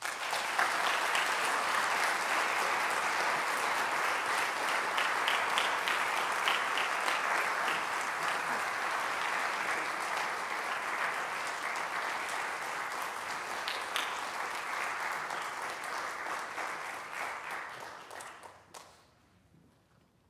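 Audience applauding after a piano piece. The applause starts suddenly and holds steady for about eighteen seconds, then dies away near the end.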